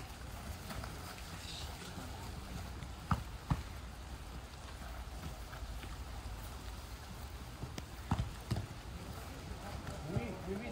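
Steady low outdoor rumble broken by short sharp thumps of a football being kicked, in two pairs about half a second apart: one pair about three seconds in, the other about eight seconds in.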